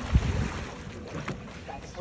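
Wind buffeting the microphone as low, uneven rumbling, loudest in a gust just after the start.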